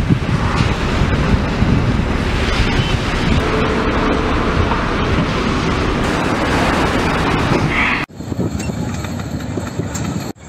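Armoured personnel carrier's engine running under load as the eight-wheeled vehicle drives down a landing ship's steel ramp, a dense steady rumble. About eight seconds in the sound cuts abruptly to a thinner recording of vehicle noise.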